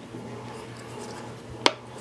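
A single sharp click about one and a half seconds in, the shift lever of a Comet forward-neutral-reverse gearbox being clicked from neutral into forward.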